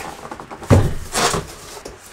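Cardboard box being opened and a bicycle wheel pulled out of it: a thump about two-thirds of a second in, then scraping and rustling of the cardboard.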